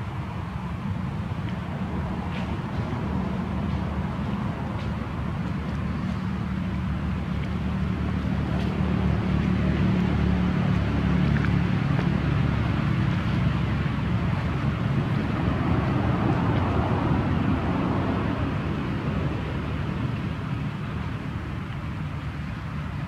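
Steady low rumble, like a motor running in the background, swelling to its loudest in the middle and easing off near the end.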